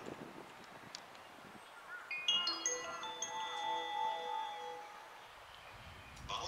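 A short electronic bell chime from a station's public-address speakers. Clear bell-like notes enter one after another about two seconds in, then a few sustained lower notes play a brief melody and stop about five seconds in.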